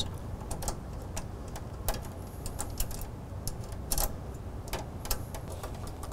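Small, irregular metal clicks and ticks as the little screws are put back in and turned down on an embroidery machine's cap driver, over a low steady hum.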